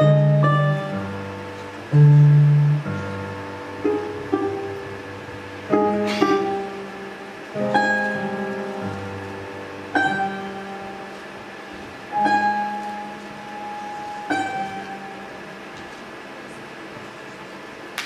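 Balalaika and piano playing slow closing bars: a chord about every two seconds, each left to ring and fade, the last one dying away over the final few seconds.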